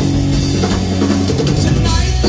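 Live rock band playing loudly: two electric guitars, bass guitar and drum kit.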